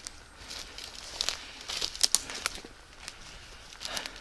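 Footsteps crunching over dry pine needles and twigs on the forest floor: a string of irregular snaps and crackles.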